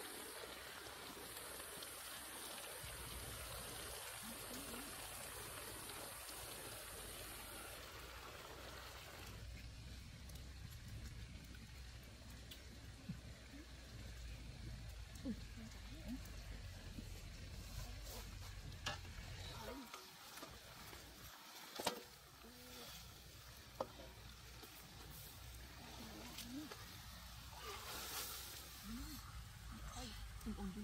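Pork legs frying in bubbling oil and sauce in a wok: a steady sizzle for the first several seconds, then quieter, with a few sharp clicks of a utensil against the wok.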